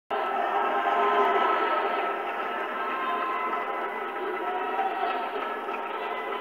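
Loud, steady mix of many held tones at once, cutting in abruptly at the very start and sounding on without break.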